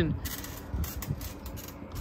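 Faint creaks and rattles from trampoline springs as people move about on the mat.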